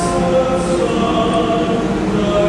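Male choir singing a slow piece in sustained harmony, several voices holding long chords that shift together.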